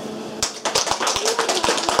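Small audience applauding by hand, the clapping starting about half a second in and going on as a dense patter of claps.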